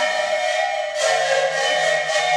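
An ensemble of Andean panpipes (sikus) playing held notes together, with an airy, breathy edge to the sound. A new, fuller chord with a low held note comes in about a second in.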